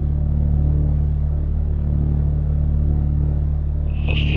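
Low sustained keyboard drone: a deep synthesizer chord held steady, with a slight fast wavering in loudness.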